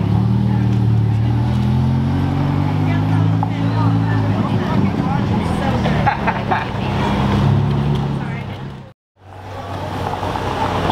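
Ferrari Roma's twin-turbo V8 driving off at low speed, its note rising a little in pitch and then fading as the car pulls away. The sound cuts off suddenly about nine seconds in.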